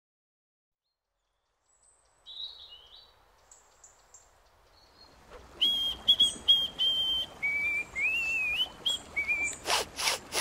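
Silent at first, then birds chirping and tweeting, faint at first and louder from about five seconds in over a soft outdoor hiss, with a run of short repeated notes and sliding calls. Near the end, a couple of quick sniffs.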